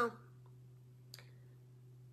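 Near silence: room tone with a steady low hum, broken by a single faint click a little over a second in. A woman's word trails off at the very start.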